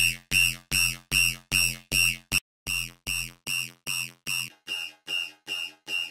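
Serum software synthesizer playing a repeating electronic stab pattern of bright, evenly spaced notes, about two and a half a second. A deep bass layer sits under the first notes and drops out about four and a half seconds in, and there is a brief gap a little past two seconds.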